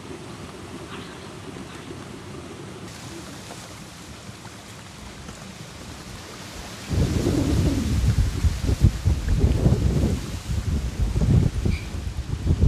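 Wind on the microphone outdoors: a faint steady low rumble, then from about seven seconds in loud, uneven low buffeting that rises and falls in gusts.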